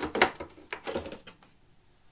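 Hard plastic filter media trays of a canister filter knocking and clicking against each other and the canister as one is lifted out, with a few light knocks in the first second.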